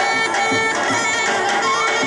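Macedonian folk dance music: a reedy wind melody over a steady drone, with a drum beating under it.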